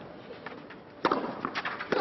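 A tennis ball struck by racket on a clay court: a crisp serve hit about a second in, then the return hit just under a second later. A quiet stadium crowd is in the background.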